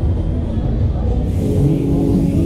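Loud fairground music over the deep rumble of a Technical Park Street Fighter pendulum ride in motion; a hiss comes in a little past halfway.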